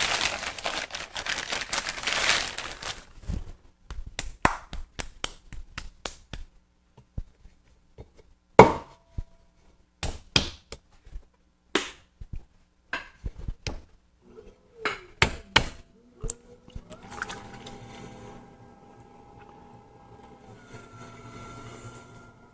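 A plastic bag crinkling, then a series of thuds and knocks as a lump of clay is handled and set down on the potter's wheel head. After that comes the steady hum and whine of the wheel's electric motor running.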